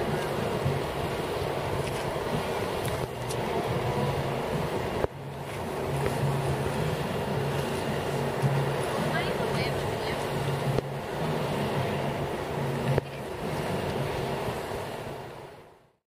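Indistinct voices of people talking outdoors over a steady background hiss. The sound breaks abruptly a few times and fades out at the end.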